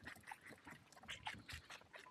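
A Valais Blacknose lamb nosing and nibbling at the camera up close: faint, quick, irregular clicks and crunches of its mouth and muzzle.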